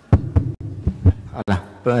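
A few dull thumps and knocks of a microphone being handled, then a man's voice starts near the end.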